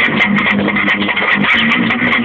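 A cheap, distorted electric guitar playing a rough punk riff over the beat of a children's drum machine.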